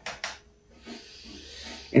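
A man drawing a long, audible breath between phrases of a voice message, after a brief click just after the start.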